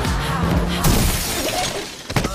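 A car hitting a person running across its path: a sudden shattering crash about a second in, fading over half a second, over music.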